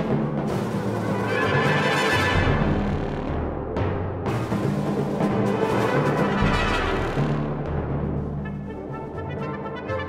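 Brass and percussion ensemble playing contemporary concert music, with timpani notes held low beneath loud brass swells. Near the end the sound thins to quieter, higher brass.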